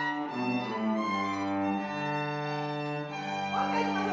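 Small string ensemble of violins, violas and cellos playing a slow passage of long held notes, changing chord a few times early on and then holding a chord.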